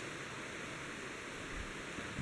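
Faint, steady outdoor hiss with no distinct events.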